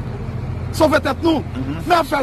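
A man speaking in a street crowd, his voice coming in under a second in, over a steady low rumble of street noise.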